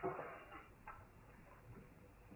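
A pause in speech: faint room noise with a few soft clicks, the clearest about half a second and about a second in.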